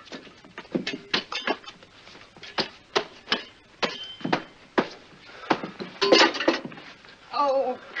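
Hands beating and slapping at a smouldering dress to put out the fire: a quick, irregular run of sharp smacks, several a second, followed by a short exclamation about six seconds in.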